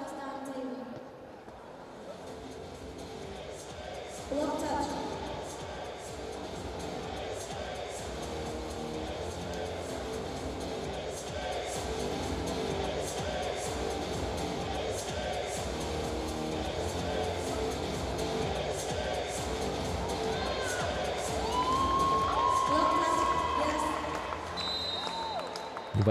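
Music playing over an arena's PA system with a crowd cheering and shouting, in a large reverberant sports hall.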